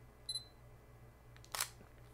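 Sony a6000 mirrorless camera giving a short high focus-confirmation beep, then, about a second later, a brief shutter click as it takes a flash photo.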